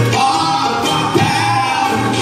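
Live acoustic band with a male singer holding one long note over strummed acoustic guitars.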